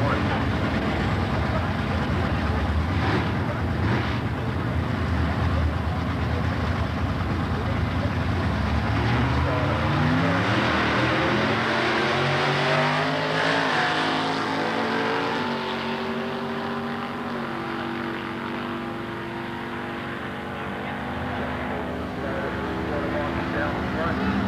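Two drag cars, a silver 1971 Chevelle and a yellow Nova, rumbling at the starting line. About a third of the way in they launch and accelerate hard, engine notes rising in repeated climbs through the gears, then fading down the strip.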